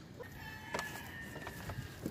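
A rooster crowing faintly in the distance: one thin, drawn-out call from about half a second in, lasting about a second.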